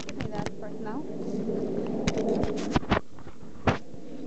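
Handling noise from a handheld camera being moved: a string of sharp clicks and knocks, over indistinct low voices.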